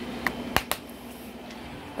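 Three short, sharp plastic clicks in quick succession as a DVD is handled and loaded, the loudest about half a second in, over a faint steady room hum.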